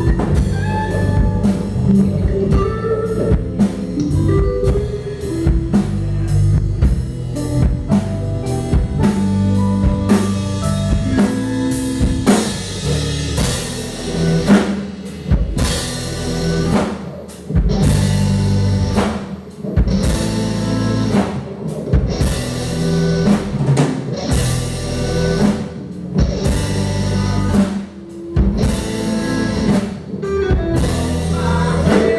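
Live rock band playing an instrumental passage: drum kit, two electric guitars, bass and a Nord Electro 2 keyboard. From about twelve seconds in, the drums hit harder with heavy cymbal-and-snare strikes and a few short breaks.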